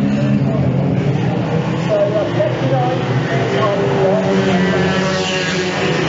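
Engines of several banger race cars running and revving as they race round the track, one engine rising in pitch about five seconds in.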